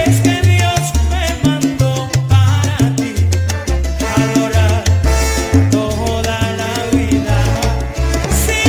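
Salsa music playing: an instrumental passage with a syncopated bass line and steady percussion, no vocals.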